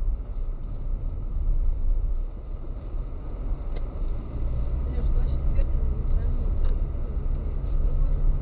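Steady low rumble of a car's engine and tyres on the road, heard from inside the moving car's cabin, growing a little louder about five seconds in.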